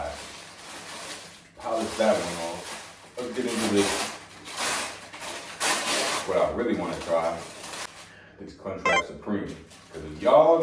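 A man talking in short spells while a paper food wrapper rustles and crinkles as he opens it.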